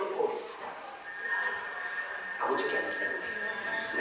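A man preaching into a handheld microphone through a hall PA system. A steady high whistle comes in about a second in and holds under his voice.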